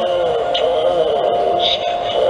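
Animated Halloween raven clock playing its spooky sound effect: eerie music with a wavering, warbling voice-like tone over a steady held note.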